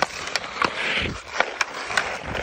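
A hockey stick blade clacking against a puck and the ice during stickhandling, a quick irregular run of sharp clicks, with the hiss of skate blades scraping the ice between them.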